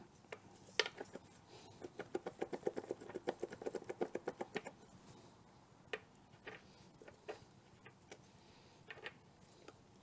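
A ratchet wrench clicking in a fast, even run for nearly three seconds, with a few single metallic clicks and taps from tools and parts before and after.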